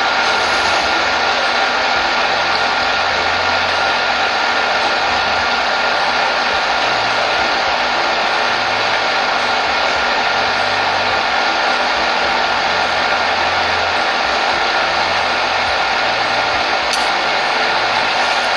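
Steady, loud rushing noise that holds an even level throughout, with a faint high tone running through it.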